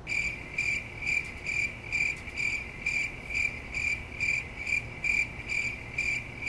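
Cricket chirping, steady and evenly paced at about two chirps a second: the stock sound effect for an awkward silence.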